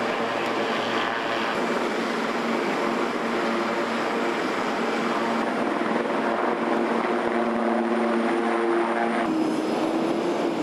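A steady engine drone with a few held tones, which shift in pitch near the end.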